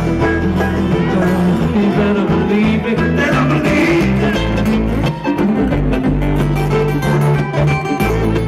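Live amplified bluegrass string band playing an instrumental passage: upright bass under picked acoustic strings.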